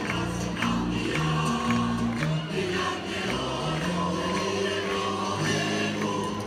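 A large choir singing, with light taps keeping a steady beat about every half second.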